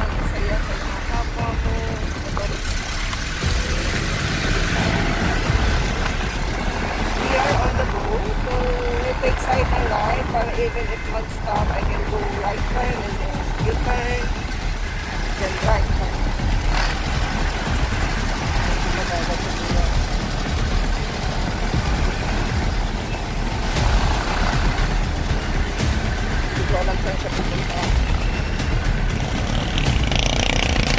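Steady road noise of a motorcycle ride in town traffic: wind buffeting the microphone over the bike's engine and surrounding vehicles.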